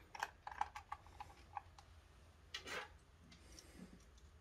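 Faint small clicks from a precision screwdriver turning a screw out of the plastic battery cover of a bedside alarm clock, several irregular ticks in the first two seconds, followed by a soft handling rustle.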